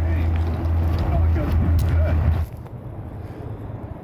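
A low steady engine-like drone, as from a vehicle running nearby, with faint voices over it. It cuts off sharply about two and a half seconds in, leaving quieter outdoor background.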